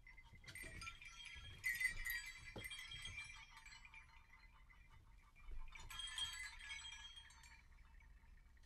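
Faint, high, chime-like tinkling in two flurries: the first starts about half a second in and lasts some three seconds, the second comes about six seconds in.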